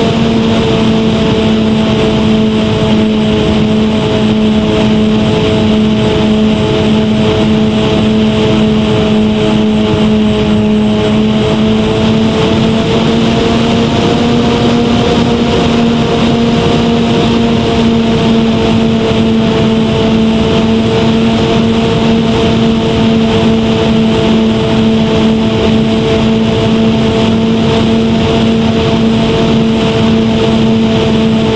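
Twin electric motors and propellers of an RC airplane humming steadily, heard close up from a camera mounted on the plane, with air rushing past the microphone. The pitch sags slightly about a third of the way in, then rises a little and holds.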